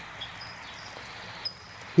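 Quiet outdoor background: a steady faint hiss, with two brief, faint high chirps.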